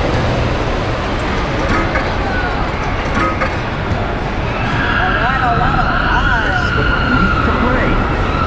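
Busy arcade din of game-machine sounds and crowd chatter. About five seconds in, a steady high electronic tone starts and holds, with a wavering siren-like game sound effect beneath it for a moment.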